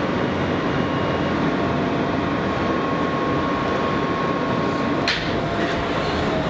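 New York City subway car in motion, heard from inside: a steady rumble and rush of the train running, with a thin steady whine over it. A short sharp clack comes about five seconds in.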